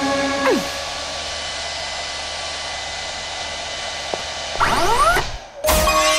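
Cartoon hair-dryer effect: a steady, even hiss of a salon dryer running for about four seconds, after a short music phrase dies away. Near the end, rising sweeps and then a sudden loud hit as the music comes back in.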